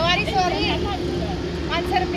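The engine of a homemade jugaad vehicle running steadily with a low drone, under a woman's voice in quick rising and falling tones at the start and again near the end.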